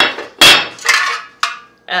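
Heavy metal decorative letters knocking and clanking as they are set down and picked up: a loud knock about half a second in, then two lighter knocks.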